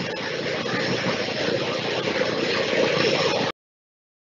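Steady rushing noise with no words in it, on a live stream's audio feed. It cuts off suddenly about three and a half seconds in as the stream ends.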